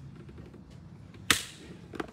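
A single sharp knock about a second in, the loudest thing here, followed by a fainter click near the end.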